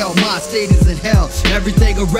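Hip-hop record playing, a rapper's voice over a laid-back beat with deep kick drums about once a second.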